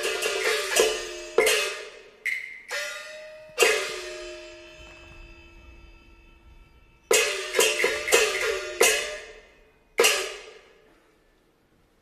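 Cantonese opera percussion of gongs, cymbals and wood clapper: a fast run of strikes, then single ringing strikes, one with a tone that slides down in pitch as it fades. A second flurry comes about seven seconds in, and a last strike about ten seconds in rings away to near silence.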